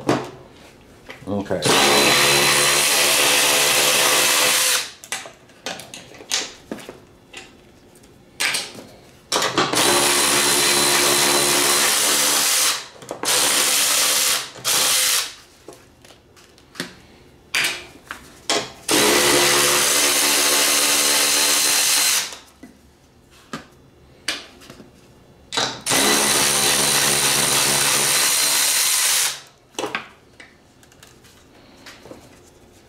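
Milwaukee cordless electric ratchet running four times, about three seconds each, spinning off the four 13 mm nuts that hold a mower deck spindle, with short clicks and metal handling noises between the runs.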